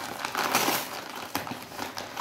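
Brown paper mailer envelope crinkling and rustling as it is handled, loudest about half a second in, with a short sharp crackle of paper a little later.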